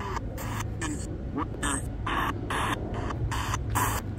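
A DIY spirit box built from a Ratakee radio, sweeping rapidly through stations. It gives choppy bursts of static, about three a second, broken by brief gaps and short clipped radio fragments.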